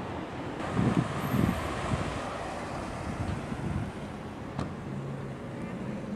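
Outdoor traffic ambience, a steady hiss, with gusts of wind buffeting the microphone about a second in.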